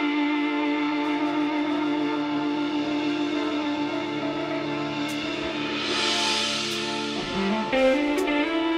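Live rock band playing a slow, sustained passage: electric guitar and a long held chord ring on steadily. A hiss swells and fades about six seconds in, and the notes change shortly before the end.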